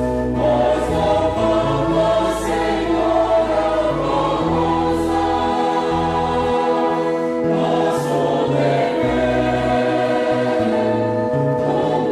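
Mixed church choir singing a hymn in held, sustained chords, accompanied by an ensemble of violins and low brass carrying a bass line that moves in steps.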